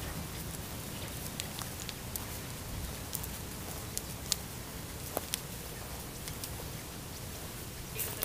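A walking miniature pony's hooves and people's footsteps on dry ground litter: scattered faint crackles and ticks, a few sharper ones a little past the middle, over a low steady rumble.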